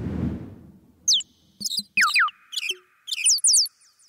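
Electronic sound effects opening a music track: a noise swell that fades over the first second and a half, then a run of quick falling-pitch chirps with echoing tails and a few short clicks.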